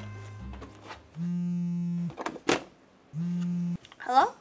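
A mobile phone ringing: two steady buzzing tones, the first about a second long and the second shorter, with a click between them. Background music fades out at the start.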